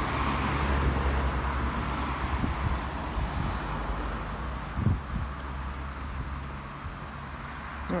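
Road traffic: cars passing, with tyre and engine noise over a low steady rumble, strongest in the first couple of seconds and easing off after. A brief louder sound about five seconds in.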